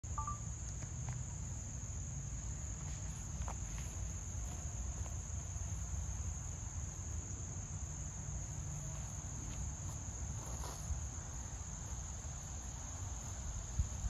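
A steady, high-pitched chorus of crickets and other insects, with a low rumble underneath and one short sharp knock just before the end.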